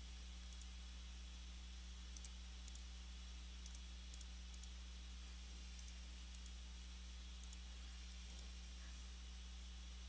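Faint computer mouse clicks, about ten, irregularly spaced, many heard as quick double ticks, over a steady low hum.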